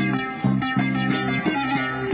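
Band music, an instrumental passage of quickly repeated notes over a steady bass line, with no singing.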